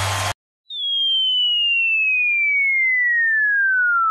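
Music cuts off suddenly, and after a short silence a falling-bomb whistle sound effect begins: one clean whistling tone sliding slowly down in pitch for about four seconds.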